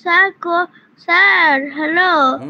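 A child's high-pitched voice calling out in a drawn-out, sing-song way: two short calls, then a longer wavering call starting about a second in.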